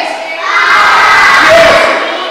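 A large group of young children shouting together, a loud burst of many voices from about half a second in until just before the end.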